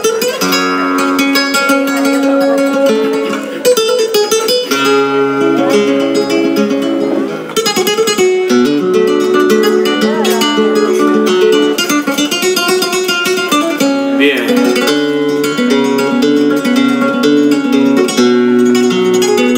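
Solo flamenco guitar playing the introduction to a peteneras, mixing picked melodic runs with strummed chords.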